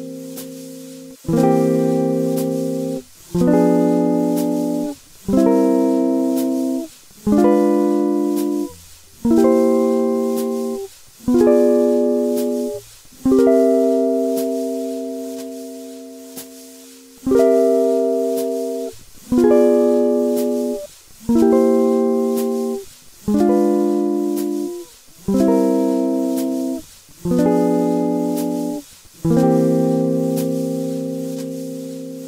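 Guitar playing a chord exercise, one chord struck about every two seconds and cut short before the next, linking C dominant seventh chord shapes with diminished seventh chords. One chord near the middle rings on for about four seconds.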